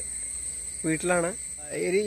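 A man's voice in two short phrases over a steady, unbroken high-pitched insect trill, like crickets.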